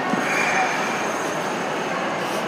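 Steady hubbub of a busy indoor play area, with a brief high squeal about half a second in.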